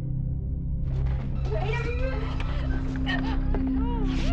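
Low droning horror-film music, joined about a second in by a rustling noise and many short, gliding high cries, like wailing or mewling.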